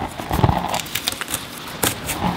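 Rustling and crackling of stretchy plant tape and monstera stems being handled as the tape is hooked around a wooden stake, with a sharp click near the end.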